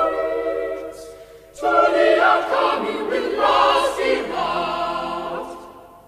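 Choir of boy trebles and men singing in a large, resonant cathedral. One phrase dies away about a second in and the next begins half a second later. Near the end the final chord decays slowly into the reverberation.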